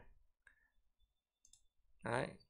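Near silence, with a few faint computer clicks: one about half a second in and a couple about a second and a half in.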